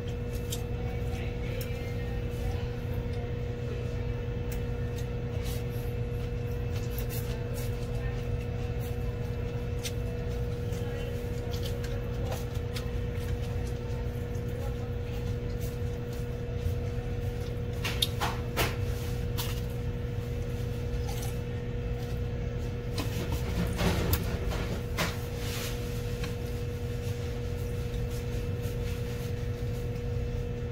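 A steady low hum, with a few short clicks and brief noisy sounds of a person eating noodles with chopsticks from a ceramic plate, loudest about halfway through and again a little later.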